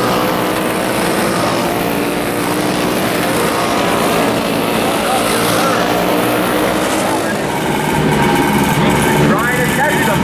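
Several vintage single-cylinder flathead kart engines running at racing speed, their engine notes overlapping steadily as karts pass through the corners.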